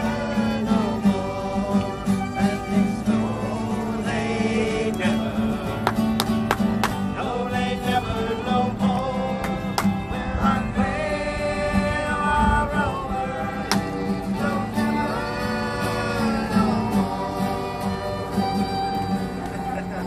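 Live acoustic old-time string band playing a tune: fiddles over a strummed acoustic guitar.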